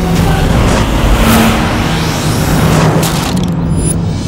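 Sound-effect car engine running fast with several whooshing sweeps over a steady low hum. The whooshing stops a little before the end.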